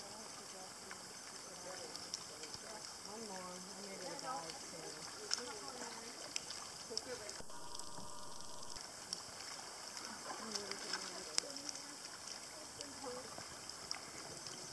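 Faint patter of many small splashes and ticks as a school of fish jumps at the surface of calm water.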